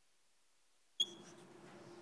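Silence, then about a second in a sharp click with a brief high squeak, typical of chalk catching on a blackboard. A faint steady hum of room tone follows.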